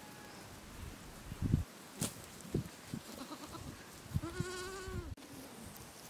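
A goat bleats once, a single held call of under a second a little after the middle, among scattered faint low knocks and rustles.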